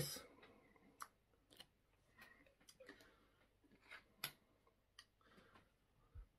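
Near silence with a few faint, scattered clicks: a plastic screw cap being twisted back onto a glass bottle.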